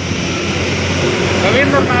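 Steady engine-like rumble with a low hum, growing slightly louder, behind a man's voice speaking into the microphones.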